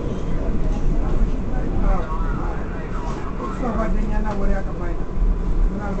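R188 subway car running between stations, a steady deep rumble with a thin steady whine above it. Indistinct voices of people talking rise over it in the middle.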